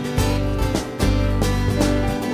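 Live rock band playing a fast, bright acoustic arrangement: strummed acoustic guitars, electric bass, drums and keyboard, with regular drum strokes over a steady bass line.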